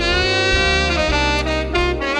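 Smooth jazz instrumental led by saxophone, which holds one long note in the first second before moving on.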